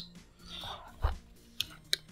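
Bayonets being handled on a wooden tabletop: a soft thump about a second in, then two short sharp clicks near the end.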